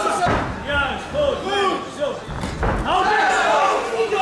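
Two heavy thuds of strikes landing in a kickboxing bout, one just after the start and one a little past the middle, over loud shouting voices in a large hall.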